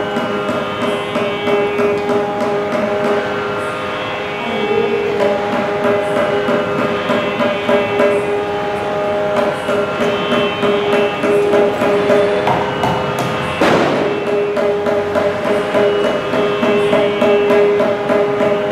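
Carnatic concert music: a mridangam playing a dense run of strokes over a steady drone, with one sharper, louder hit about fourteen seconds in.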